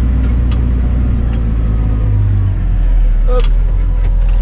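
Massey Ferguson 8470 tractor's six-cylinder diesel engine running steadily, heard from inside the cab while working in the field with a plough. About two and a half seconds in, its note drops slightly.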